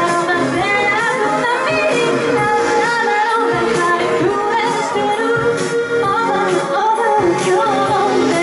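A woman singing live into a microphone over a pop backing track with a steady beat.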